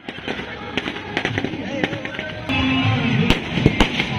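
Firecrackers going off in scattered sharp pops, the two loudest near the end, over music and people's voices.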